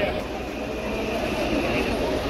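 Coach bus engine running close by, a steady low rumble with a level hum, under scattered chatter from people standing around it.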